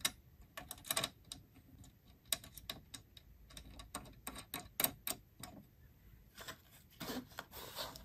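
Quiet, irregular metal clicks and taps as a hem folder attachment is fastened to a coverstitch machine's mounting plate, with a washer and a knurled screw turned by hand.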